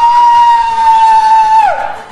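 A loud, high held note with harmonics that slides up into pitch at the start, holds steady for about a second and a half, then drops away near the end.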